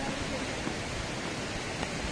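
Steady rushing noise of wind on the phone microphone, with an uneven low rumble from the gusts buffeting it.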